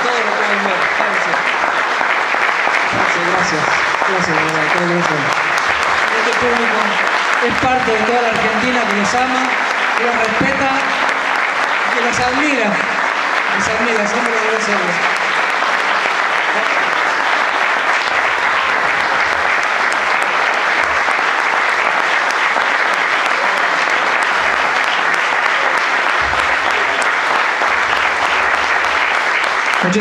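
A crowd applauding steadily and warmly, with voices calling out over the clapping through the first half.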